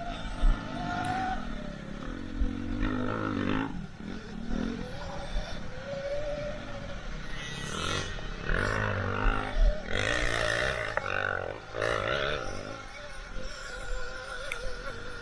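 Sur-Ron electric dirt bike being ridden hard over a dirt motocross track: the electric motor's whine rises and falls with the throttle, over drivetrain and tyre noise and knocks from the bumps. Louder rushing stretches come in the second half.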